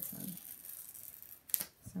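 Stiff clear acetate sheet rustling as it is handled and lifted from a paper page, with one sharp plastic click about one and a half seconds in.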